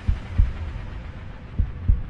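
Two slow, heartbeat-like double thumps, a pair near the start and another about 1.5 s later, over a steady low hum: a heartbeat sound effect in a dramatic film soundtrack.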